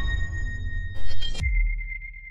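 Electronic logo sting: a noisy swell dying away, a quick run of sharp hits about a second in, then a deep low hit and a high ping that rings on and slowly fades.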